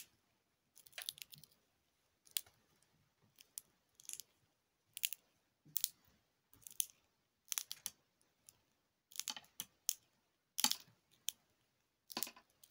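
Glow sticks being bent and handled, making short crackles about once a second.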